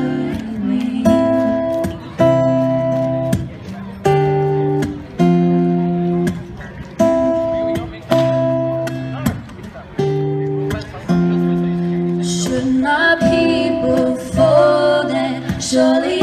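Acoustic guitar strumming held chords, a new chord struck about every second, in an instrumental passage of a song. A singing voice comes back in over it in the last few seconds.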